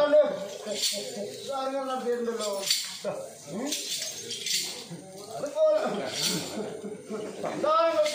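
People talking, several voices in turns with short pauses; the talk is the main sound.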